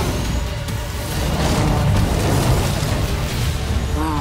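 Film trailer soundtrack: music mixed with a deep, steady rumble that swells about a second in.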